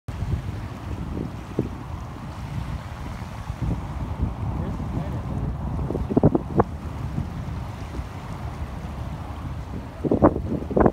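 Wind rumbling and buffeting on the microphone, with small waves lapping in the shallows. A few brief, sharper sounds come about six seconds in.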